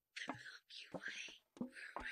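Close-miked whispering, song lyrics read aloud in short phrases with brief pauses and a few short clicks between them.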